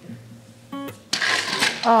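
A glass wine bottle clinks once with a short ring, then ice rattles in a metal ice bucket as the bottle is set down into it, over soft guitar music.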